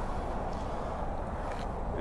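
Steady low rumble and hiss of vehicle noise, with no distinct event.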